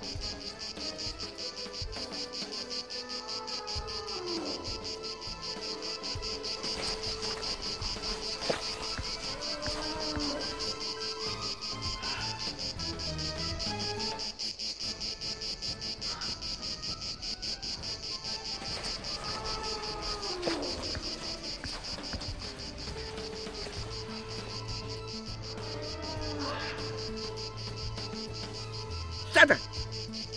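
Night ambience of steady, high-pitched insect chirring like crickets. Every several seconds there are faint gliding calls, and at times a held mid-pitched tone.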